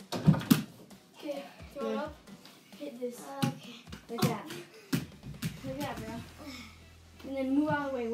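Young girls' voices talking and exclaiming during a game of mini-hoop basketball, with several sharp knocks in the first few seconds as the small ball strikes the over-the-door hoop and door.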